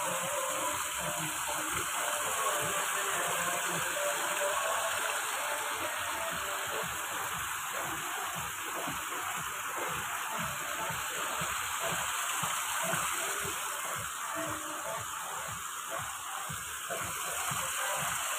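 Steady rushing of water spilling over a low sandbag weir and small cascades into a mountain stream.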